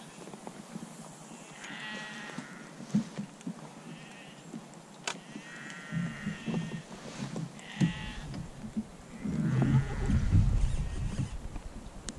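An animal calling about five times in short, high, wavering calls a second or two apart. A single sharp click comes midway, and a low rumble swells near the end.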